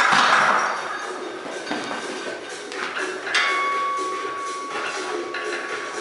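A loaded barbell being set back into a squat rack: a loud metal clank right at the start that rings away over about a second. A steady high tone comes in about three seconds later and holds.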